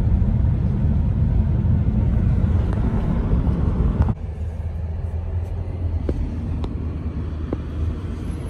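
Road and engine rumble heard inside a moving car's cabin, steady and low. About four seconds in it cuts abruptly to a quieter, steady low hum.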